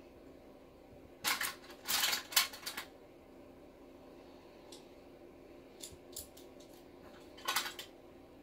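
Brief rustling and light clicking from hands working close to the microphone. There is a cluster of them about a second in, a few faint ticks in the middle, and another short burst near the end, over quiet room tone.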